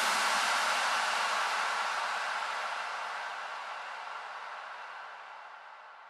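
Tail of an electronic dance backing track after its last beat: a hiss-like wash of sound with no bass, fading away steadily.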